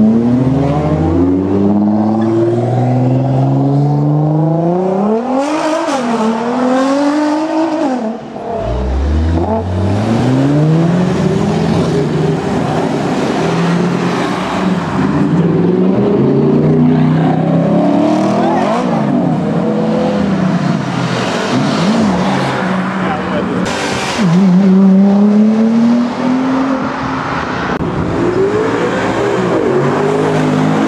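A line of sports cars pulling away one after another, each engine revving up and climbing in pitch as it accelerates past. A brief loud burst comes about 24 seconds in.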